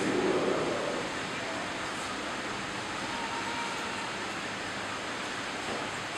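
Steady, even hiss of room noise in a large hall. A low murmur of voices fades out about a second in.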